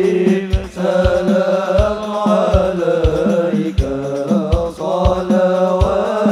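A group of men chanting sholawat, devotional Arabic songs in praise of the Prophet, in unison through a PA, with a steady low drum beat about twice a second underneath.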